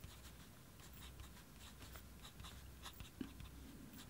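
Parker Duofold fountain pen nib writing on paper: faint, short scratchy strokes.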